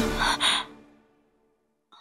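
A woman's short, sharp sigh about half a second in, over background drama music. The music then fades away to near silence.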